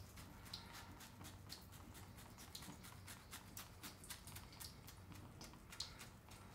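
Faint short scrapes of a Gillette Fusion Power cartridge razor cutting through lathered facial stubble, two or three strokes a second.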